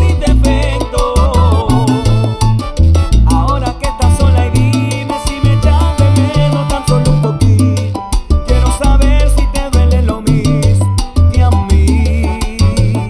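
Baby bass, a solid-body electric upright bass, plucked in a deep salsa bass line of held low notes, playing along with a full salsa band recording.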